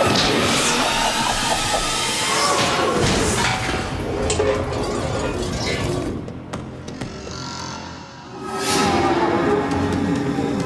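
Cartoon soundtrack of background music layered with sound effects of thuds, crashes and whooshes. It dips quieter for a couple of seconds past the middle, then a whoosh near the end brings it back up.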